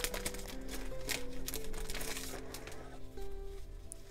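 Soft background music of held notes that step from one pitch to another, with the rustle and crinkle of a paper packet being torn open and sheets of paper slid out, busiest in the first second or so.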